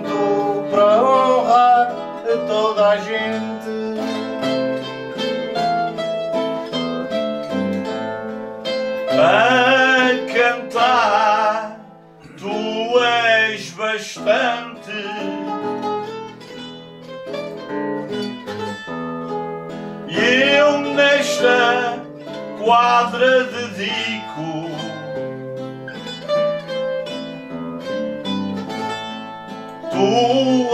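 Azorean cantoria ao desafio: a man sings improvised verse in Portuguese in several short phrases, over a continuous plucked accompaniment from a classical guitar and a pear-shaped Portuguese guitar, with purely instrumental stretches between the sung lines.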